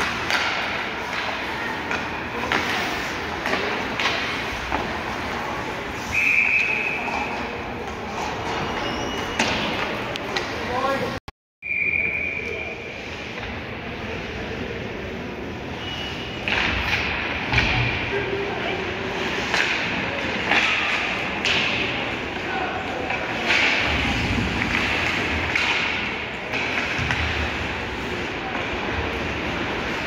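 Ice hockey play in an arena: sticks and puck clacking, thuds against the boards, and voices of players and spectators echoing in the rink. A short steady whistle blast sounds about six seconds in and again about twelve seconds in, stopping play.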